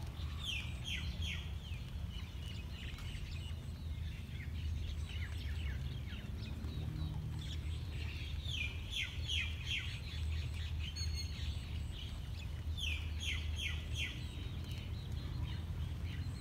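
A songbird singing: a phrase of several quick, downward-sliding notes, repeated three times, with fainter calls in between, over a steady low rumble.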